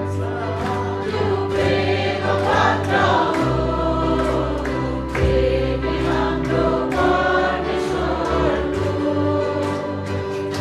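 A small group of women singing a worship song in unison, accompanied by a live band with electric guitar, a low bass line and a steady beat.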